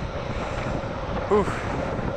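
Steady wind rush on a rider-worn microphone during a downhill skateboard run, with one short vocal sound a little over a second in.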